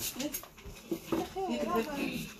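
Quiet, indistinct speech with a few light clicks near the start.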